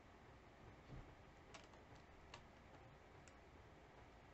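Near silence with room tone, broken by a soft low thump about a second in and three faint, sharp clicks after it, from small objects being handled.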